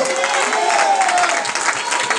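Church congregation clapping, with voices calling out over the claps.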